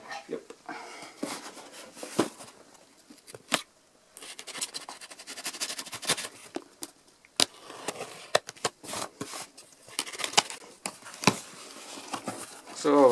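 A box cutter slicing along the packing tape of a cardboard box, with sharp clicks and scratchy rustling of cardboard and tape as the box is handled.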